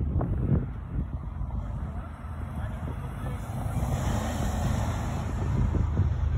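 Wind buffeting a phone's microphone, a steady low rumble. About three and a half seconds in, a car passes on the road, its tyre hiss swelling and then fading.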